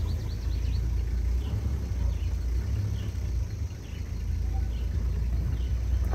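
Outdoor ambience: a steady low rumble with a bird's short falling chirps repeating every second or so.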